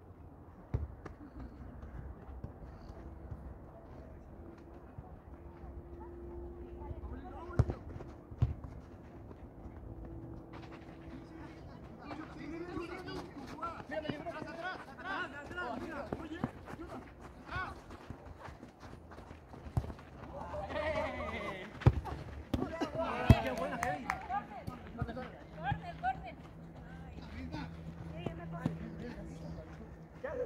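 Players' voices calling and shouting across an outdoor football pitch, busiest past the middle. A few sharp thuds of the ball being kicked stand out, the loudest two near the end.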